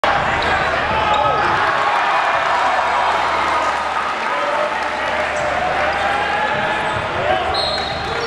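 A basketball bouncing on a hardwood gym floor under a constant din of crowd voices and shouting. There is a brief steady high tone shortly before the end.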